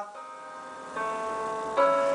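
Two sustained notes from an accompanying instrument between runs of a sung 'ya-ya-ya' warm-up: one comes in about a second in, and a second, louder one near the end, sounding the pitch for the next run.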